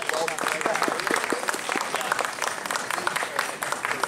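A crowd applauding with many hands clapping, with a voice calling out at the very start.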